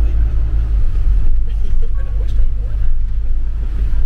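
Steady low rumble of a double-decker bus's engine and running gear, heard from inside on the upper deck.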